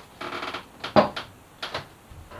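Beer poured from a glass bottle into a tall glass, a short splashing pour to raise a little head on top, then a sharp knock about a second in as the glass bottle is set down on the wooden counter, followed by a few lighter clicks.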